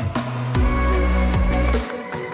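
Electronic dance music with a heavy, deep bass line and falling bass sweeps.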